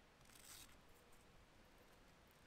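Near silence, with one brief faint rustle about half a second in.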